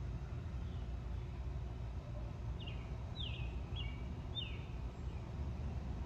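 Outdoor backyard ambience: a steady low rumble with a bird giving about four short, falling chirps from about two and a half to four and a half seconds in.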